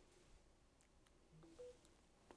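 A faint, short chime of three notes stepping up in pitch, about one and a half seconds in: the alert that wireless charging has started on the phone laid on the charging pad.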